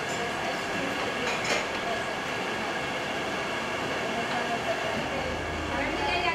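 Steady din of a busy kitchen: several people talking at once over a general hubbub, with a brief clatter of utensils about a second and a half in.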